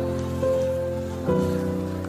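Soft background music of sustained held chords, moving to a new chord about half a second in and again a little past a second.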